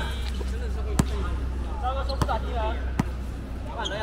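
A basketball bouncing on an outdoor hard court three times, roughly once a second, with players' voices around it.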